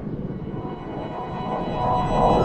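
A Windows system sound run through 'G Major' pitch-shift and echo effects: many stacked, sustained copies of the jingle sounding at once over a low rumble, growing louder.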